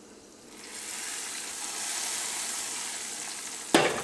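Hot ghee with fried cashew nuts and raisins poured into a pan of semiya payasam, sizzling: a high hiss that starts about half a second in, builds for about a second and then holds steady. A single sharp knock comes near the end.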